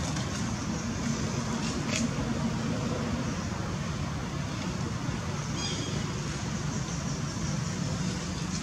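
Steady outdoor background rumble like distant road traffic, with a short high-pitched chirping call about six seconds in.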